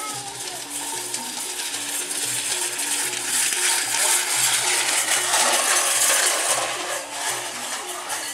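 Music with a steady repeating beat runs throughout. Over it, a loud rushing, jingling noise builds to a peak in the middle and fades near the end as a pair of karapan racing bulls gallops past, dragging the jockey's wooden sled.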